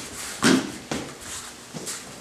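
Boxing gloves smacking padded focus mitts: three sharp hits, the loudest about half a second in, then two lighter ones.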